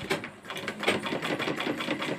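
Domestic straight-stitch sewing machine stitching through fabric: a quick, even run of needle strokes that picks up about half a second in.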